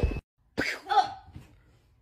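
A noisy sound cuts off abruptly just after the start. Then a person makes two short cough-like vocal sounds, about half a second and a second in.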